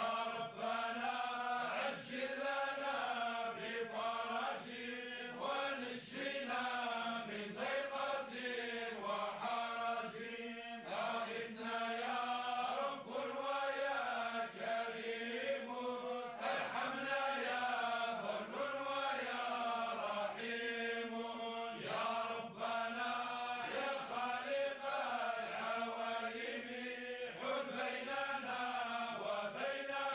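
A group of men chanting Sufi devotional praise poetry (madih) together, unaccompanied. Their voices carry a bending melodic line over a steady held note.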